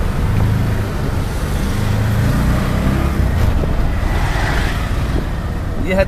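Auto-rickshaw (tuk-tuk) engine running steadily under way, a loud low rumble with road and wind noise, heard from inside the open passenger cab.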